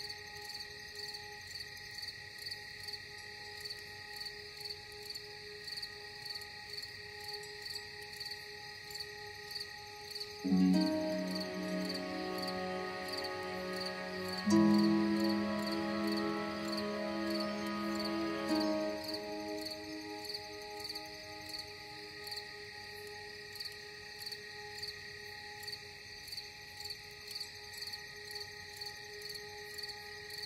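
Crickets chirping in a steady, even rhythm, about one and a half chirps a second, over a faint sustained drone. About a third of the way in, a low sustained music chord swells in, shifts to another chord a few seconds later and fades away.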